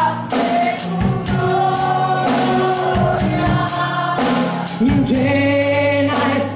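Gospel worship song: a woman singing into a handheld microphone, with other voices joining, over musical accompaniment with a steady beat.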